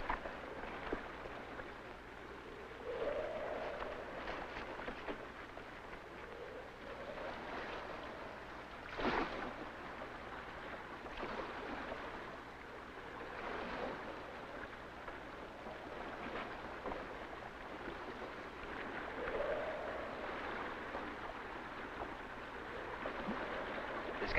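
Sea water washing and lapping in a steady hiss that swells every few seconds, with one sharp knock about nine seconds in.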